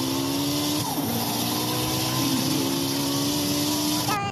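Simulated race-car engine sound from the Gran Turismo driving game, running steadily with its pitch slowly rising and falling back twice, about a second in and a little after two seconds.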